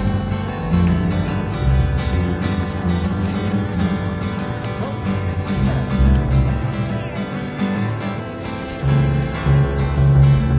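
Acoustic guitar being played, a song with deep bass notes that change every second or so.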